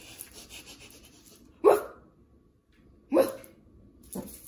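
Yorkshire terrier puppy giving two short barks, about a second and a half apart, each dropping in pitch. Faint rustling comes before the first bark.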